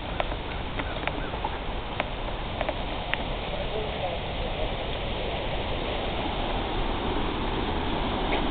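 Minnehaha Falls running fast in high flow, a steady rush of falling water, with a few sharp clicks in the first three seconds.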